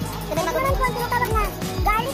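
Background music: a high, gliding vocal-like melody over a steady beat.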